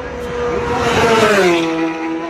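A racing motorcycle passing at full speed, its engine note swelling to a peak about a second in and then dropping in pitch as it goes by.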